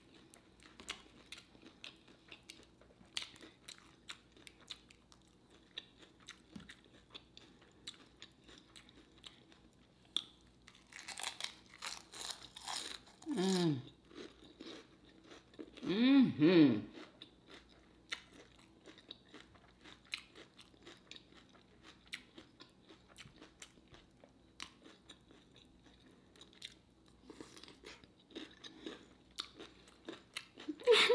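Close-miked chewing and crunching of a fried lumpia (Filipino egg roll) wrapped in lettuce, as a run of small crisp clicks. About halfway through come two short hummed "mmm"s of enjoyment, which are the loudest sounds.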